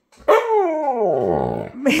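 Husky vocalizing in reply to being coaxed: one drawn-out howl-like call, about a second and a half long, that starts high and slides steadily down in pitch.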